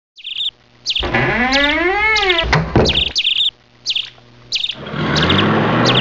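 Birds chirping in short repeated chirps, with a longer pitched call rising and then falling in pitch about a second in. Near the end a steady low sound with hiss comes in under the chirps.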